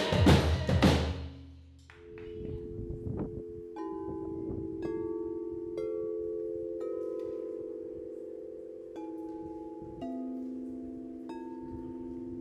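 Loud band music with singing fades out in the first second and a half. Then quartz crystal singing bowls are struck one after another, roughly once a second with a short pause in the middle, each note ringing on so that the pure tones overlap into a sustained chord.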